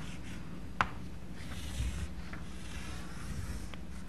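Chalk scraping across a blackboard as lines are drawn, with a single sharp tap about a second in.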